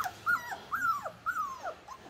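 Cavoodle puppies whining: a run of about five short, high whines, each rising and then falling.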